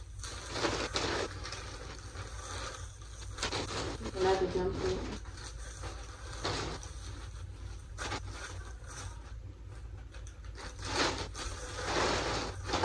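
Plastic poly mailer bag and clothing rustling and crinkling in irregular bouts as garments are pulled out of it, over a steady low hum.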